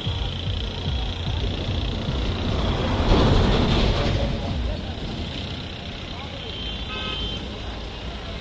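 Convoy of SUVs and motorbikes driving past, engine and tyre noise swelling loudest about three seconds in as a vehicle passes close. A short car horn toot sounds near the end.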